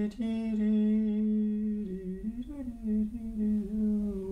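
A man humming with his mouth closed: one long held note that dips and wavers a little about halfway through, then holds again.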